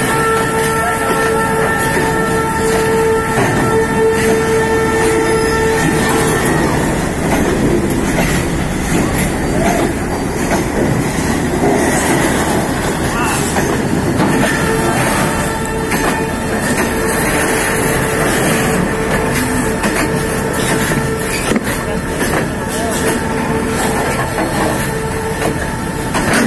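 A freight train of flat wagons rolling past, its wheels and wagons making a loud, continuous running noise. A long steady tone sounds over it for the first six seconds and again, fainter, through the second half.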